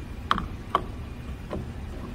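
Three short metallic clicks as the radius attachment of a tool and cutter grinder is handled and set on the machine's table, over a low steady hum.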